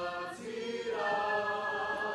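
A small group of men and women singing a Māori waiata together, unaccompanied, in long held notes that move to a new note about a second in.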